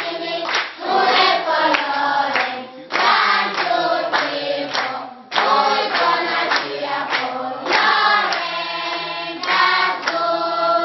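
A group of children singing a song together in chorus, with brief pauses between phrases about three and five seconds in, and hand claps along with it.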